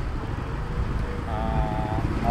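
Motor scooter engine running while riding through city traffic, under a heavy low rumble of wind on the microphone. Near the end a steady held tone rises over it.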